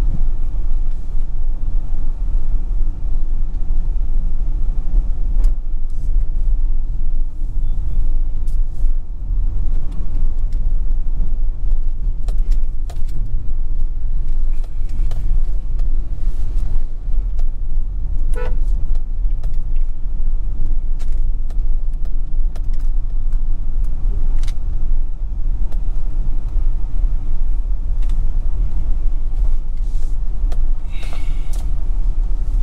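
Steady low rumble of a vehicle driving along a rough road, with scattered clicks and rattles. A brief high-pitched tone sounds once, about 18 seconds in.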